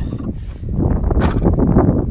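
Wind buffeting the microphone, a steady low rumble that grows louder about half a second in, with one short click a little over a second in.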